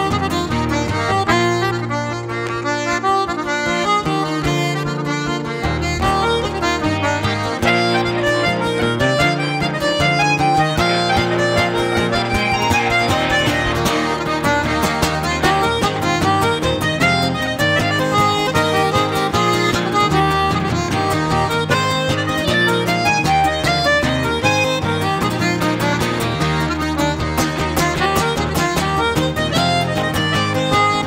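Two-row button accordion playing a fast Irish traditional dance tune, with guitar accompaniment underneath.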